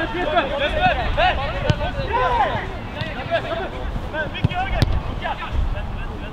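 Players calling and shouting across a football pitch, with wind rumbling on the microphone and a few sharp thumps in the second half.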